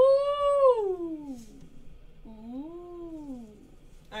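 Two drawn-out animal cries: the first long, rising slightly and then falling in pitch, the second shorter, rising and then falling.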